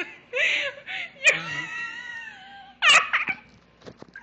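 A young woman laughing hard: breathy gasps, then a long, high-pitched held laugh from about a second in, and a short, loud burst of laughter near the end.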